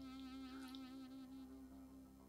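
A faint, low hum held for about two seconds, its pitch wavering slightly, fading out near the end.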